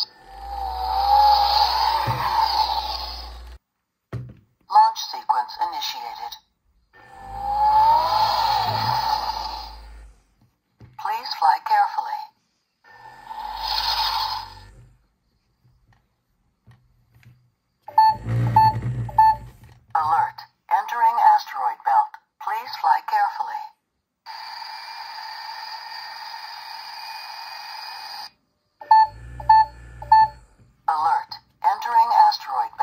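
Toy Story Lightyear spacecraft steering wheel toy playing electronic effects through its small speaker: rising whooshes over a low rumble, snatches of recorded voice, strings of short beeps, and a steady hiss lasting about four seconds near the end.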